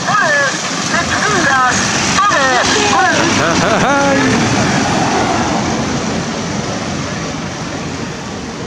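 Voices over steady street and motor noise, their pitch sliding up and down; after about four and a half seconds the voices stop and only the steady noise remains, easing off slightly toward the end.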